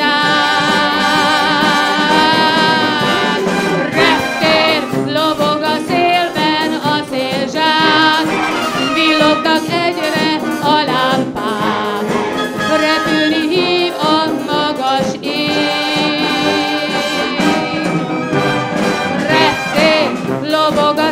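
Youth concert wind band playing a pop-song arrangement: brass (trumpets, tubas, horns) with saxophones and flutes over a steady percussion beat.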